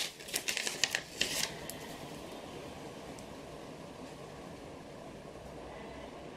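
Small plastic drill-pen tips being handled, giving a handful of light clicks and taps in the first second and a half, then a steady faint hiss.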